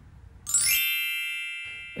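A bright chime sound effect: a quick shimmer of high ringing notes about half a second in, settling into a held chord that fades slowly.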